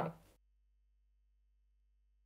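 Near silence: the last syllable of a voice dies away in the first moment, leaving only a faint, steady low hum.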